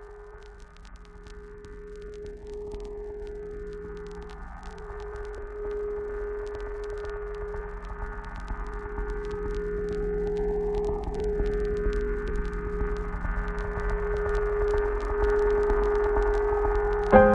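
Opening of an instrumental track: a sustained synth drone on one steady note that swells gradually louder. A slow filter sweep rises and falls through it about every eight seconds.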